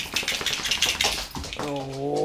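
A large dog, wet from a shower, moving about on a hard floor: a quick run of rustling and clicking that lasts about a second and a half.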